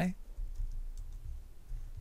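A few faint computer keyboard keystrokes over a low steady background hum.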